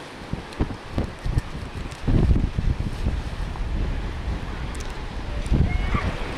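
Wind buffeting the camera microphone in low, uneven rumbles, gusting harder from about two seconds in.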